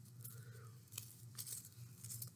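Faint rustling and crinkling of paper leaves being rolled by hand around a paper flower stem, with a few small clicks, over a low steady hum.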